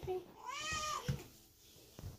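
Domestic cat meowing once, a drawn-out call that rises and then falls in pitch, about half a second in.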